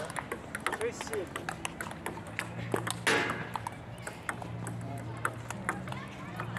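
Table tennis rally: the celluloid-style ball clicking back and forth off the paddles and the table in a quick irregular series, with a louder hit about three seconds in. Faint voices, and from about a second and a half in a low steady hum, sit underneath.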